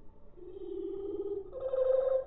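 Recording of a bird's very fast song played back at greatly reduced speed, so the chirps come out as low, slowly warbling tones: one from about half a second in, then a higher, steadier one from about one and a half seconds.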